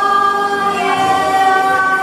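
Children's chorus singing a long held note.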